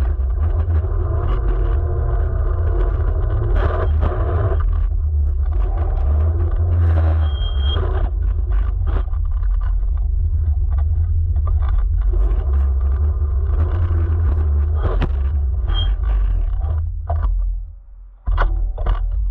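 Electric scooter riding over asphalt, heard from a low-mounted camera: a heavy low rumble from the tyres and road, with the motor's whine shifting in pitch as it speeds up and slows. There are scattered sharp knocks, the camera striking cones, and the sound drops away near the end as the scooter stops.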